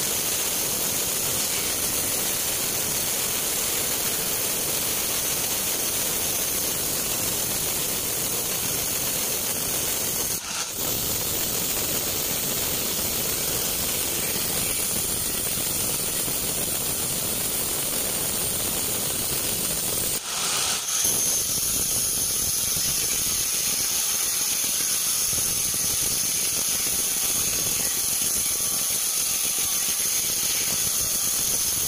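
Vertical band sawmill cutting lengthwise through a teak log: a loud, steady saw noise with a high-pitched whine, dipping briefly twice.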